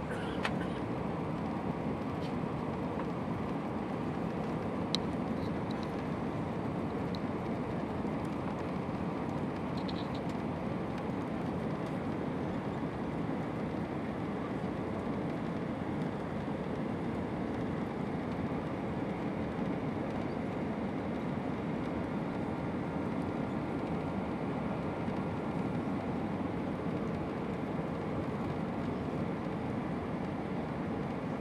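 Steady rush of engine and airflow noise inside the cabin of an Airbus A320 airliner on final approach, heard from a window seat behind the wing. A couple of faint clicks sound near the start, and a faint steady tone joins in toward the end.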